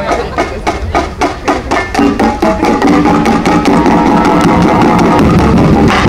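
A drum line playing marching drums: about two seconds of sharp, evenly spaced strokes, about four a second, then the full line with bass drums comes in and keeps a steady beat.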